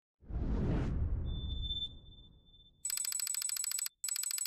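Logo-sting sound effects: a deep whoosh that fades out over about two seconds under a thin, high, steady tone, then a buzzy, telephone-like ringing tone in two bursts, the second shorter.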